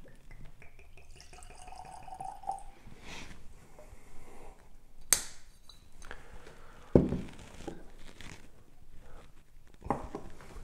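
Whisky poured from a bottle into a tasting glass, a thin trickle rising slightly in pitch as the glass fills. A sharp click follows about five seconds in, then a heavier thud as the bottle is stoppered and set down on the wooden sideboard.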